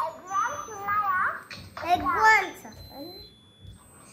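A young child talking in short high-pitched phrases, falling quiet for the last second or so.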